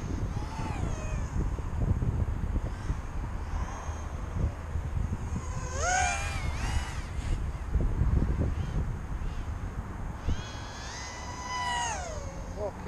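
Micro quadcopter's Racerstar 1306 brushless motors and props whining in flight, the pitch gliding up and down with throttle. Several close pitches sound together, one from each motor; the whine rises about halfway through and comes in again near the end, falling away.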